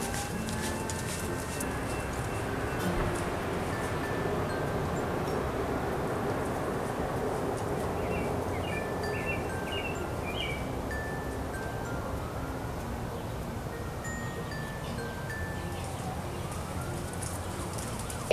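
Backyard ambience: a steady rush of outdoor background noise with wind chimes ringing now and then, a few bird chirps about eight to ten seconds in, and a faint distant siren wailing up and down in the second half.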